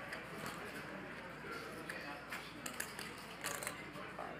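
Faint, indistinct talk at a poker table, with a few light clicks in the second half.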